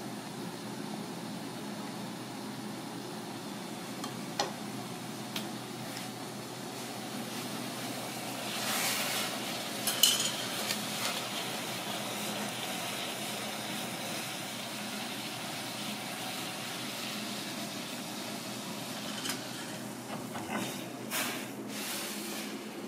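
Kitchen work sounds over a steady background hum: a few sharp knocks of a knife and utensils, a swell of hissing near the middle with one sharp clack of chopsticks on a metal pan, and a clatter of the pan being handled near the end.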